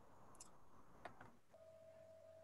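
Near silence: room tone, with two faint clicks and a faint steady tone that starts about halfway through.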